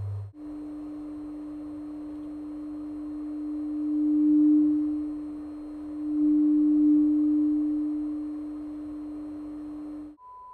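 A 300 Hz test sine tone through a speaker, passing through an op-amp bridged-T peak filter; it swells louder twice, around four and seven seconds in, as the filter's resonant peak is swept across it. It starts a moment in, just after a 100 Hz tone cuts off.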